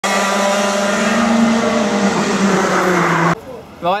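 A racing kart's two-stroke engine running hard, its pitch rising a little and then falling away as the kart passes. It cuts off suddenly shortly before the end.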